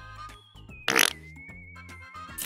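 Background music, with one short, loud suction sound about a second in as pink Play-Doh is pulled out of its plastic tub.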